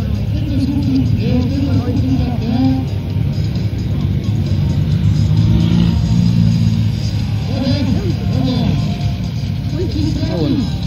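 Car engines running and being revved on a drag strip, a steady low engine sound that swells around the middle, with spectators talking close by early and near the end.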